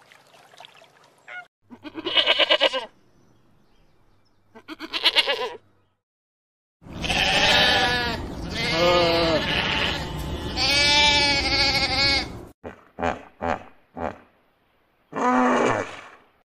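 Goats bleating: two short quavering bleats, then a run of long, loud bleats, then a few short ones near the end.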